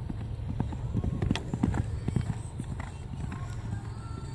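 Hoofbeats of a pinto pony moving quickly over sand arena footing, a run of thuds strongest in the middle.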